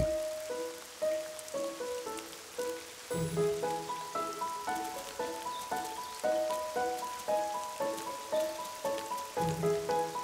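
Gentle background music, a slow melody of single notes, joined by a low held tone about three seconds in, over a steady hiss of falling rain.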